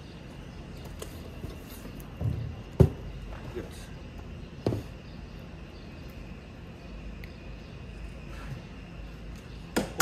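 Objects handled on a work table, including a plastic measuring jug: two short knocks, the sharper one about three seconds in and a lighter one near five seconds, over a steady low hum.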